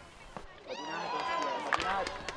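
Several voices calling out and talking over one another, from about half a second in and rising to a steady hubbub.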